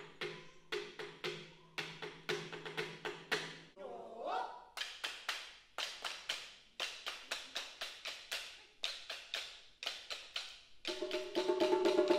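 Sharp wooden clicks of taiko bachi sticks struck in a quick irregular rhythm, played before the drums come in, with a held tone under the first few seconds and again near the end.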